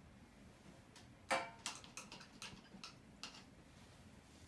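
A string of light clicks and taps, about eight in two seconds, starting a little over a second in, the first the loudest.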